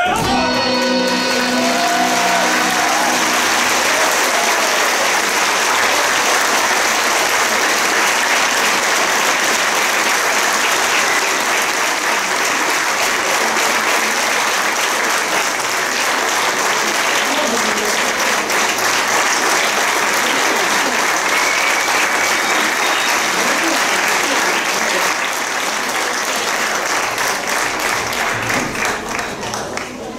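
An audience applauding steadily, with the clapping thinning out over the last few seconds.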